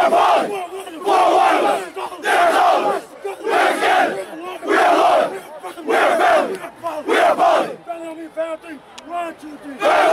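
A football team huddled in celebration, shouting a rhythmic chant together, about one loud group shout a second. Near the end it drops to a few single voices before the whole group shouts again.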